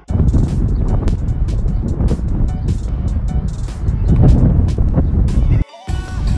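Background music over a loud, dense low rumble of wind buffeting a phone microphone in an open field. The sound starts abruptly at the outset and cuts off sharply just before the end.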